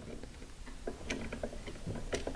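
Faint, scattered small clicks and taps as a stripped wire is worked into the back-wire hole of a dimmer switch, plastic and metal lightly knocking, over low room hum.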